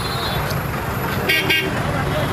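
A vehicle horn gives two short toots in quick succession about a second and a half in, over a steady low rumble of halted traffic.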